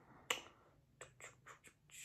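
Fingers snapping: one sharp snap, then four quicker, softer snaps in the second half.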